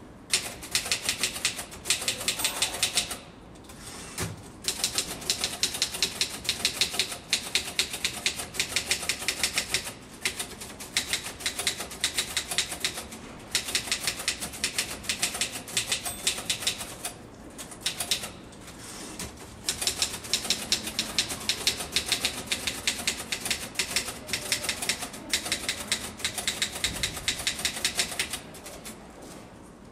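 Fast typing on a keyboard: quick runs of key clicks a few seconds long, broken by short pauses.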